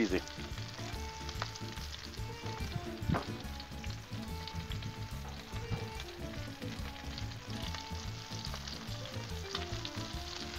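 Breaded shrimp shallow-frying in a good puddle of oil on a hot Blackstone flat-top griddle: a steady sizzle, with an occasional light tick as pieces are set down.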